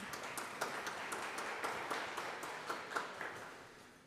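A congregation applauding in a church right after the closing hymn, a dense patter of many hands clapping that dies away over the few seconds.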